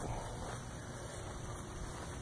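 Faint steady outdoor background noise with no distinct sound event.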